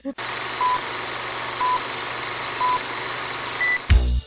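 Steady static hiss with three short, evenly spaced beeps about a second apart, then a single higher-pitched beep near the end, like a countdown signal. A brief laugh comes right at the start.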